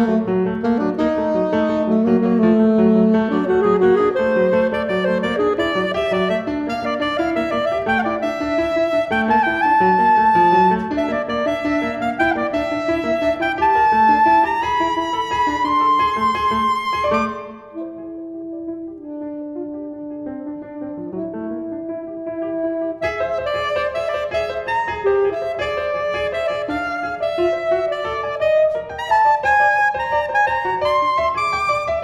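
Contemporary classical duo for saxophone and piano: a dense, busy passage of overlapping notes that climbs in pitch. Just past halfway it thins suddenly to a few quieter held notes, and about six seconds later the full texture returns.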